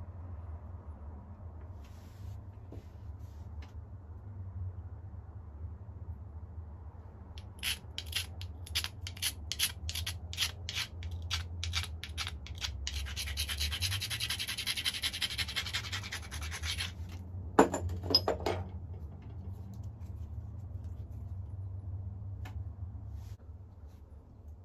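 Stone abrader rubbed along the edge of a Flint Ridge flint biface, first in separate strokes about three a second, then in fast continuous scraping. This is the knapper grinding the edge before pressure flaking. A few sharp clicks of stone come about three quarters of the way through.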